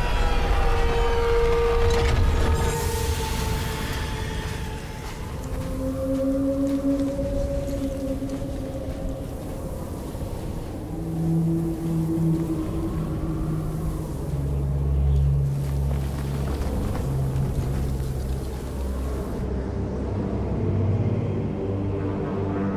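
Dark, slow film score of long held low notes that shift every few seconds, over a steady rushing wind-like noise that is strongest in the first few seconds.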